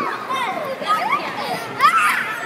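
Several children's voices chattering and calling over one another, high-pitched and continuous, with an adult voice briefly speaking.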